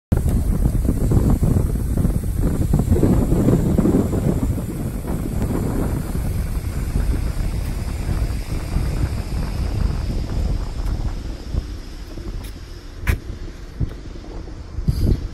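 Wind buffeting a phone microphone on a high open rooftop, strongest in the first few seconds and easing toward the end, with a couple of brief clicks near the end.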